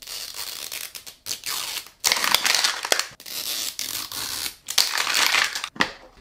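Thin plastic wrapper being torn and peeled off a plastic mystery capsule ball, crinkling and crackling in about five bursts with short pauses between them.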